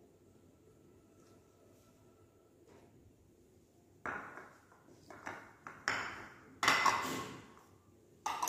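Small ceramic bowls knocked and set down on a marble tabletop: quiet for the first half, then about five sharp clinks with short ringing tails from about halfway on.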